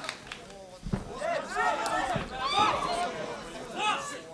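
Men's voices calling out over the ground fight, with a short low thump about a second in.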